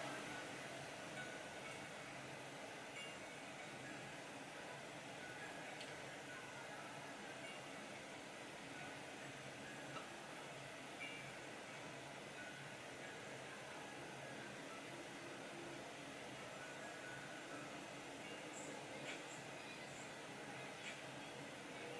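Faint steady hiss of room tone, with a few soft ticks.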